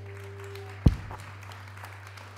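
The last held note of a song with piano and electric guitar dies away about a second in, as audience applause starts. One sudden loud thump comes just as the note ends, and a steady low hum runs underneath.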